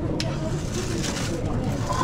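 Busy serving-counter ambience: a steady low hum, typical of kitchen extraction, under background voices, with one light click just after the start.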